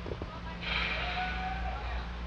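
A whooping yell, most likely from the crowd, rising about half a second in and running on to the end, over a steady low electrical hum. There are two soft knocks just before it.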